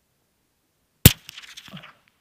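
A single .17 HMR rifle shot about a second in, fired to check the rifle's zero, with fainter sounds trailing off for about half a second after it.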